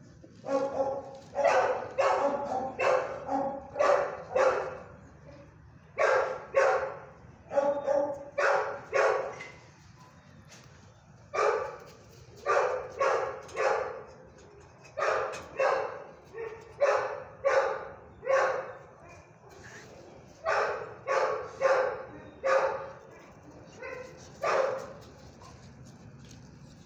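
A dog barking repeatedly in runs of several sharp barks, about two a second, with short pauses between the runs.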